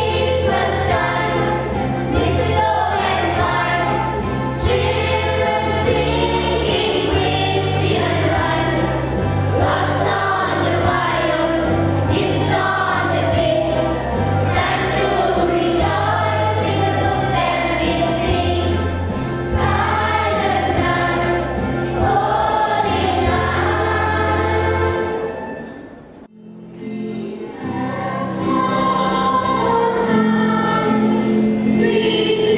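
A children's choir singing in unison over instrumental accompaniment with a bass line. About 25 seconds in the song fades out, and after a short pause the next piece begins.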